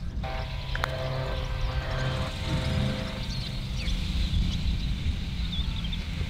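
A steady low drone of a running engine, its pitch holding level, with a slight change in tone about two seconds in.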